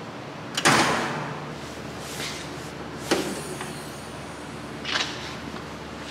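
Three clunks of a Lexus GX470's hood latch and hood as it is opened. The loudest comes a little over half a second in and rings on briefly; the two softer ones come about midway and near the end.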